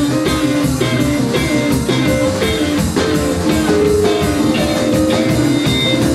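Live band playing electric rock/blues: a hollow-body electric guitar playing over electric bass and a drum kit, with a steady beat.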